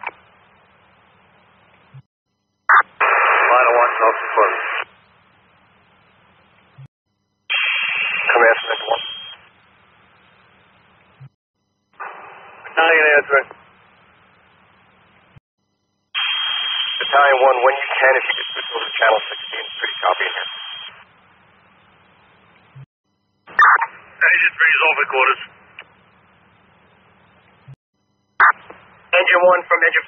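Fire department radio traffic heard over a scanner: about six short, narrow-band voice transmissions, hard to make out, separated by gaps of faint hum. A brief click follows a couple of seconds after each one.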